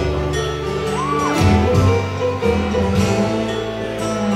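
Live string band playing, with fiddle and guitar. A short pitch glide up and back down stands out about a second in.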